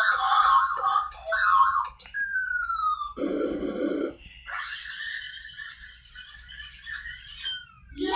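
Cartoon sound effects played from a TV's speaker: a run of sharp clicks as a letter keypad is worked, a falling whistle, a short low buzz, then a few seconds of hissing, whirring machine noise.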